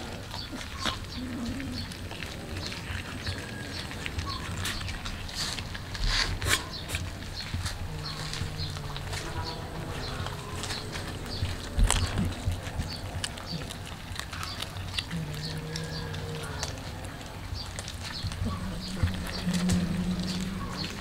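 Cats chewing and crunching raw fish, a steady run of small wet clicks that comes louder twice. A few low, drawn-out sounds of a second or two come at intervals.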